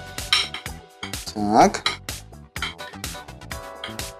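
A metal spoon clinking and scraping against a ceramic baking dish as batter is smoothed, in a string of short clicks over background music. A brief voice sounds about one and a half seconds in.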